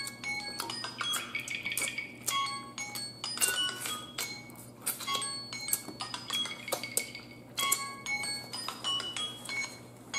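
Light background music of chiming, bell-like notes that come and go in short tones, with short sharp clicks among them. Beneath it are soft eating sounds of meat being sucked off turkey-neck bones by hand.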